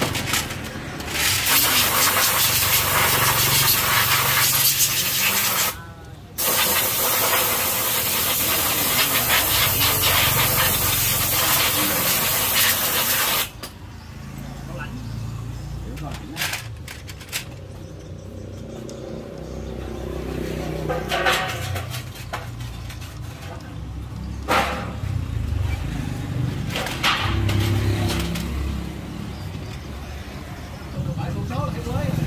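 A pressurised spray hissing loudly and steadily at the open clutch of a motorcycle engine. It starts about a second in, breaks off for a moment around six seconds, and cuts off sharply about thirteen seconds in. After that there is quieter workshop noise with low voices.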